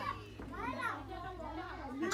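Indistinct voices talking, with children's voices among them, over a steady low hum.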